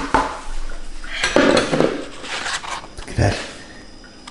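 Kitchenware being handled: a metal mesh sieve holding squeezed grated potato and a clear mixing bowl knocked and clattered about, about five separate knocks with quieter handling noise between.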